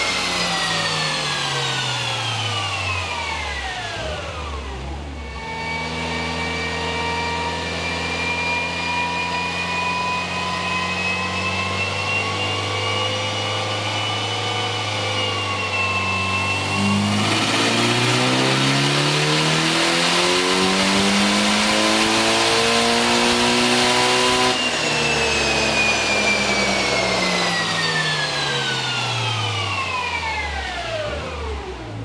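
Turbocharged 4G63 four-cylinder of a Mitsubishi Lancer Evolution 8 on an all-wheel-drive chassis dyno. The engine winds down at first and holds a steady pitch, then a little past halfway it goes to full throttle for a dyno pull, rising steadily in pitch and much louder for about seven seconds. The throttle then shuts and the revs fall away.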